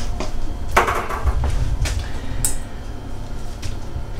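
Kitchen handling sounds: a few short knocks and clinks of bowls and utensils being moved about on a counter, over a low steady rumble.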